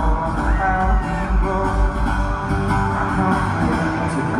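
Live arena performance by a solo singer-guitarist: acoustic guitar and singing through the PA, with a steady low beat that fades out about halfway through.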